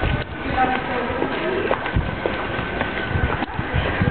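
Footsteps on stone paving while walking, a run of irregular low thumps, with faint voices in the background.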